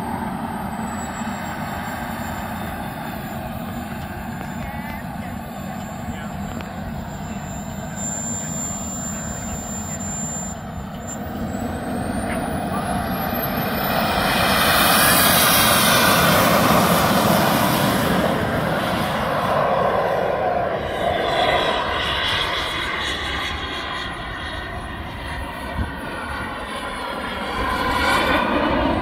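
Radio-controlled model jet's turbine engine whining steadily at idle. About eleven seconds in the whine sweeps sharply upward as the turbine spools up for takeoff, then the loud rush of the jet peaks during the takeoff roll and dips before swelling again as it climbs away.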